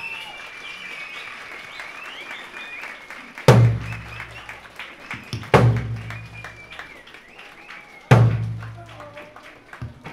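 Three heavy strikes on eisa ōdaiko (large Okinawan barrel drums), about two to two and a half seconds apart, each ringing on for about a second. Between them, high wavering whistles and scattered clapping.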